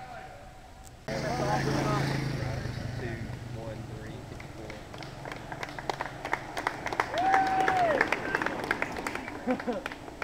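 A motorcycle engine starts suddenly about a second in as it passes, then fades. From about halfway on, spectators clap and cheer, with one long held call.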